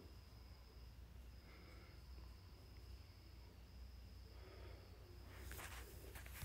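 Near silence: faint room tone with a steady faint high whine, and a few faint clicks near the end.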